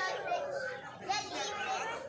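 Indistinct voices of several people talking over one another, with no words clear.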